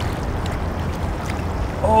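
Steady wind rumble on the microphone over choppy river water, an even, deep noise with no distinct events.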